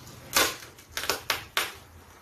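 A cardboard box being torn open by hand: five short, sharp ripping strokes, the loudest about a third of a second in, then a quick run of four more past the one-second mark.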